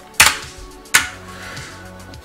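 Two sharp computer keyboard key strikes, about three quarters of a second apart, the first the louder: the command to reboot the Linux virtual machine being entered.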